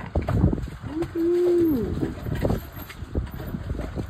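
Wind buffeting the microphone over choppy water, with one drawn-out vocal sound about a second in that rises, holds and then falls in pitch.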